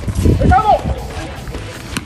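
A short shouted call about half a second in, then a sharp crack of a bat hitting a baseball right at the end, over background music.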